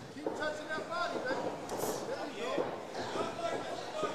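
People's voices talking and calling out indistinctly, with no clear words.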